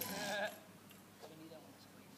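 A person's short, high-pitched wavering vocal sound in the first half second, followed by faint background voices.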